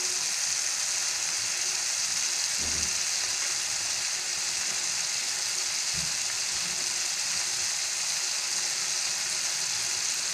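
Chopped tomatoes and chillies sizzling in hot oil in a non-stick kadai as they soften: a steady, even hiss, with a faint thud or two.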